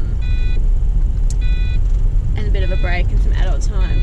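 Steady low road and engine rumble inside a moving car's cabin. A short electronic beep repeats about every second and a bit, and a voice is heard briefly in the second half.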